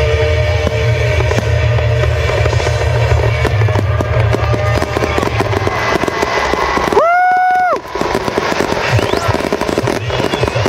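Rapid barrage of aerial fireworks shells bursting, over music played with the show. The bursts grow denser in the second half. About seven seconds in, a loud held note rises in pitch, holds for under a second and cuts off.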